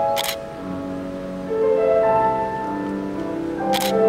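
Grand piano played solo: held chords and melody notes ringing on. Two short sharp camera-shutter clicks cut across it, one just after the start and one near the end.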